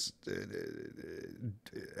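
A man's drawn-out, low, creaky "uhhh" hesitation sound, quiet and rough, lasting about a second and a quarter.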